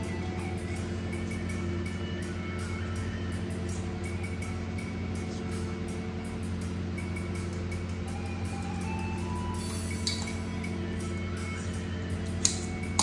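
Soft background music over a steady low hum, with one faint clink about ten seconds in.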